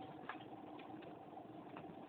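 Quiet room tone: a faint steady hum with a couple of faint clicks.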